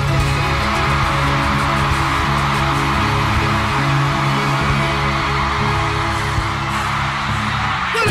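Live bachata band playing an instrumental passage on electric guitars and bass, with no singing.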